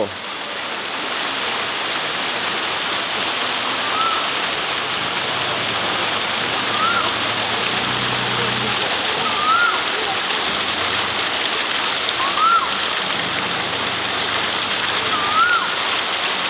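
Steady rush of water falling from a pool's rock waterfall. A short rising-and-falling whistle repeats about every three seconds.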